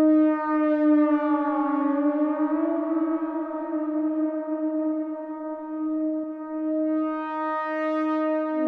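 Korg Minilogue analog synthesizer sustaining one steady held note, with its pitch and tone wavering slightly down and then up about two seconds in as a knob on the panel is turned.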